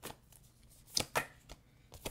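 Oracle cards being handled off the table: a few short card snaps and flicks, the two sharpest about a second in, a fraction of a second apart.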